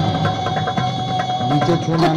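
Rapid, irregular clicking over a steady held tone and a music bed, from the soundtrack of a TV news segment played back over loudspeakers in a hall.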